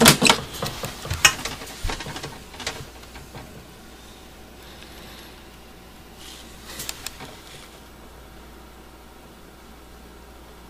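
Scattered clicks and knocks of things being handled, thickest in the first three seconds, with a few more about seven seconds in and quiet room tone between.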